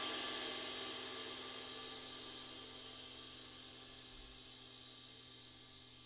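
Istanbul Mehmet Legend 21-inch sizzle ride cymbal ringing out after a strike, its wash fading steadily away with no new hit.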